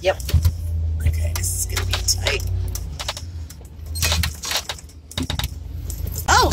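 Inside the cab of a 1990 Sprinter Mallard Class C motorhome driving on a rough dirt road: a steady low engine and road rumble, with loose things in the camper clattering and rattling over the bumps.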